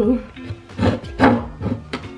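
Background music with guitar, over a spatula scraping and stirring stiff bread dough in a mixing bowl, a few short scrapes about a second in.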